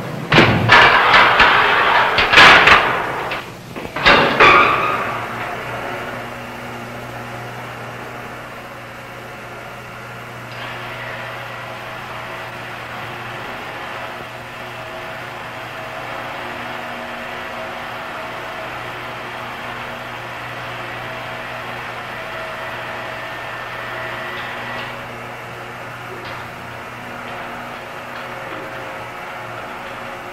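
Several loud metal clanks and bangs in the first few seconds as a door and elevator gate are worked, then the steady low hum of an elevator car running in its shaft.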